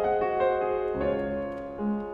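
Solo piano music in a classical style: sustained notes ring on, with new chords struck about a second in and again near the end.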